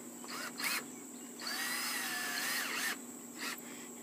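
Cordless drill in low gear driving a deck screw straight through a steel joist hanger into a wooden floor joist. It gives a short spin-up with a rising whine about half a second in, then runs steadily for about a second and a half, then gives a brief final blip near the end.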